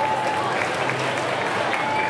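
Audience applauding, with voices from the crowd mixed in.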